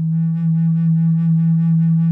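Low sub bass flute holding one long, steady low note, with a slight regular pulse in its tone.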